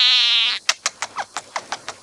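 Scaly-breasted munia singing: a drawn-out, buzzy note of under a second, followed by a run of quick short clicks.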